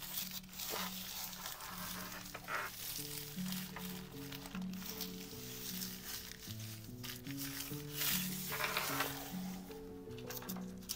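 Background music with slow held notes, over the rustle and crinkle of thin wet strength tissue paper being rubbed down by hand onto a gel printing plate, loudest about eight to nine seconds in.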